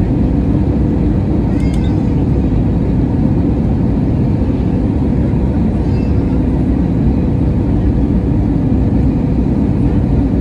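Steady cabin roar of an Airbus A321neo descending on approach, heard from a window seat beside its CFM LEAP-1A turbofan, with a faint steady hum running through it.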